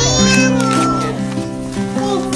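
A short meow-like cry at the start, as acoustic guitar music begins with single picked notes that ring and change pitch in steps.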